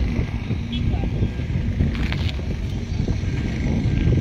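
Wind buffeting the microphone with a heavy, uneven low rumble, under indistinct voices of people talking nearby.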